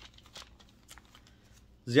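A pause in a man's talk: quiet room tone with a few faint clicks, then his voice resumes near the end.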